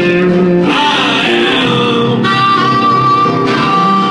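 A live blues band with electric guitars and bass playing a steady groove; about two seconds in, a blues harmonica played into the vocal microphone comes in with a long held note.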